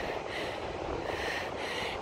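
Quick, heavy breathing from someone out of breath after climbing a steep sand dune, about two breaths a second, with wind rumbling on the microphone.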